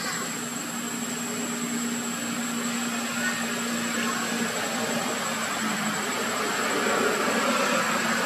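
Steady outdoor background noise with a low droning hum through most of it, the hiss growing louder and brighter toward the end.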